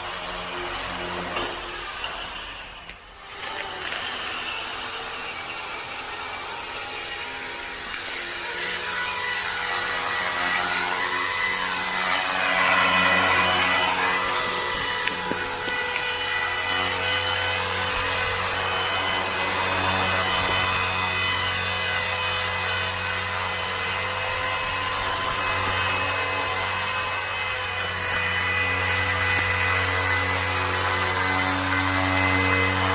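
Blade 200 SRX electric RC helicopter's motor and rotor blades whining steadily in flight. The sound dips briefly about three seconds in, then grows louder and stays loud as the helicopter hovers close by.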